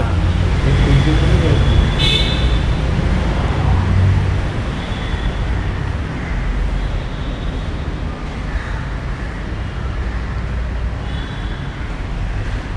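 Steady rumble of city road traffic, with short car-horn toots about two seconds in, around five seconds and again near the end.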